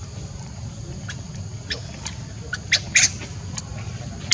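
Baby macaque giving a handful of short, shrill squeaks, the loudest pair about three seconds in, over a low steady rumble.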